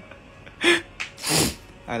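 Two loud, breathy bursts of air from a man's mouth or nose, about two-thirds of a second apart, the second one longer.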